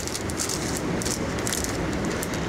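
Steady rushing of river water, with irregular crinkles from a small plastic packet being handled and torn open.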